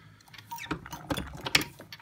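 Brass .223 rifle cases clicking and clinking against the shell holder of a Lee Breech Lock single-stage press as they are set in and pulled out for full-length sizing and depriming: a quick series of light metallic clicks from about half a second in.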